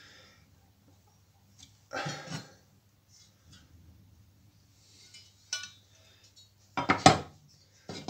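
Sheet-steel mounting bracket clinking and clanking as it is handled and laid onto a steel fuel tank: a short clatter about two seconds in, a small knock past the middle, and a sharp, loud clank about a second before the end. A faint steady low hum runs underneath.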